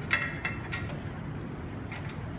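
Aluminium beach cart parts knocking together as the receiver arm is lined up on its mount: a sharp metallic clink with a brief ring just after the start and two lighter clinks within the first second.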